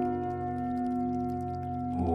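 Meditation music: several sustained ringing tones, like struck singing bowls left to sound, held over a low pulsing drone. New, fuller notes come in right at the end.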